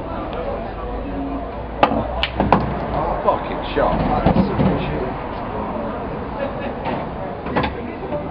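Pool shot: the cue tip strikes the cue ball and the pool balls clack together. Three sharp clicks come in quick succession about two seconds in, and one more click comes near the end.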